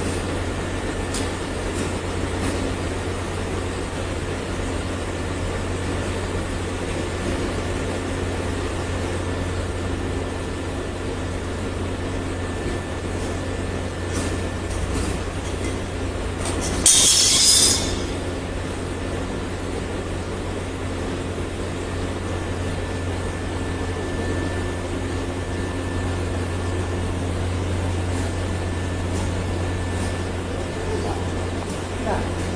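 Cable extruder machinery running with a steady low hum and drone. A little past halfway there is one loud, sharp hiss lasting about a second.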